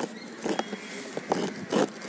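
A blade slitting clear packing tape and plastic wrap along the seam of a corrugated cardboard box, in a few short scraping rasps.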